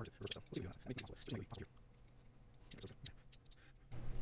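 Brian Brown Knives Raptor 2 frame-lock folding knife being flicked open and shut by hand: scattered sharp clicks as the blade snaps out of the detent and locks up, with handling rubs. The clicks come thickest in the first second and a half, with a few more about three seconds in.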